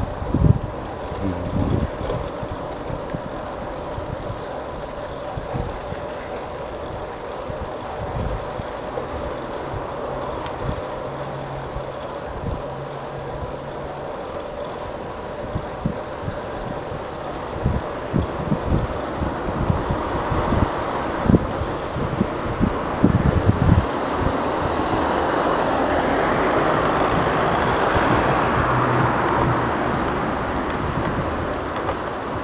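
Bicycle riding along a city street, heard from a camera on the bike: continuous rolling rumble with frequent knocks and rattles from bumps in the road, under a faint steady hum. The rolling noise grows louder and hissier over the last several seconds.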